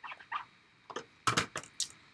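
Clear plastic stamp storage and a rubber stamp sheet being handled on a tabletop: a string of short rustles and clicks, the loudest clustered in the second half.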